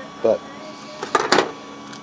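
Two quick clicks, close together about a second in, from small parts being handled and set down on a workbench.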